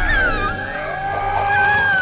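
Cartoon background music with a high, wordless cry over it. The cry glides down at the start, and a second one comes near the end.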